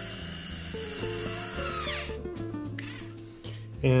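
Small electric motor of a butterfly bypass valve whining as it drives the valve plate shut. Its pitch falls as it slows at the end stop about two seconds in. Background music plays underneath.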